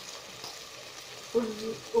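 Chicken, onion and freshly added turnip cubes sizzling in a stainless steel pot: a steady, quiet frying hiss.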